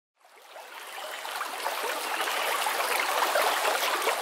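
Flowing stream water rushing steadily, fading in over the first second or so.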